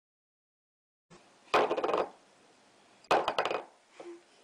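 A ceramic pet food bowl clattering against a wooden floor as a cat eats from it: two short bursts of rapid clinks, the first about a second and a half in and the second about a second and a half later.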